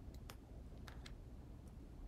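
Faint, scattered small clicks and ticks of fingers handling a satin ribbon bow, picking at the edge of the adhesive tape's liner on its back, over a low room hum.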